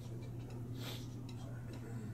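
Dry-erase marker writing on a whiteboard: a short scratchy stroke about halfway through and a few light ticks of the tip on the board, over a steady low room hum.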